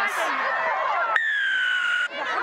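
Rugby referee's whistle: one steady, high blast of just under a second, starting sharply about halfway in and falling slightly in pitch before cutting off. It is blown for a penalty at the ruck, a player going off her feet.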